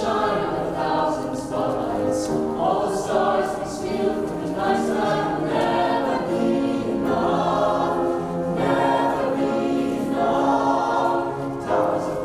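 Mixed-voice choir of teenage singers singing a slow piece in phrases of held notes.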